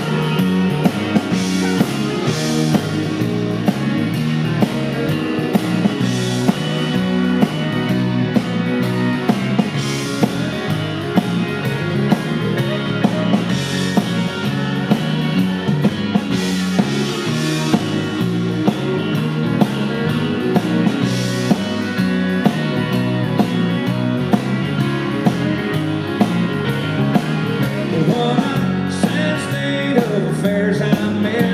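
Live band playing a song's instrumental intro: electric guitar over drums keeping a steady beat.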